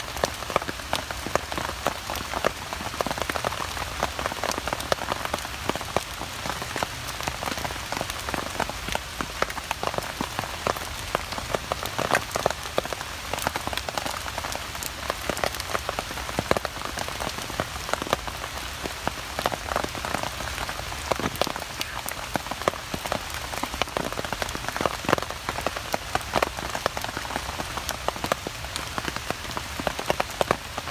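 Heavy rain pattering on a tarp shelter overhead: a dense, steady patter of sharp, close drops.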